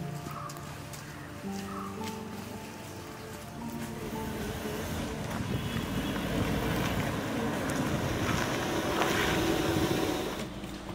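Film background music with held notes. From about four seconds in, a Maruti Suzuki Ertiga drives up on a dirt road, and its engine and tyre noise grows steadily louder.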